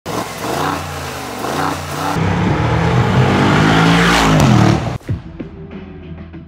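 Mercedes-AMG G63's twin-turbo V8 exhaust, revved several times with the pitch rising and falling. It cuts off suddenly about five seconds in, and music with a beat takes over.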